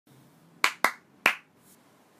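Three sharp hand claps, two in quick succession about half a second in, then a third a moment later.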